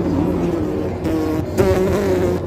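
A boy's voice moaning in pain after hurting his arm, in long held tones that shift in pitch.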